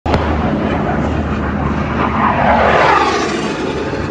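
An aircraft passing overhead. Its loud rushing noise swells to a peak nearly three seconds in, then begins to fade.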